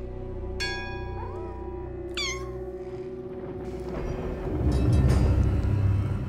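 A kitten meows, the second call falling steeply in pitch, over background music; a deep rumble swells up loudly near the end.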